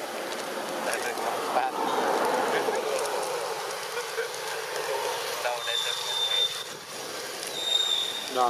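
Indistinct background voices over a rough, noisy hiss, with a thin, high, steady tone for about a second near the end.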